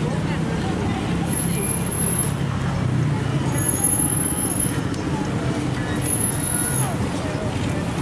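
Busy street ambience: a steady low traffic rumble with people talking nearby.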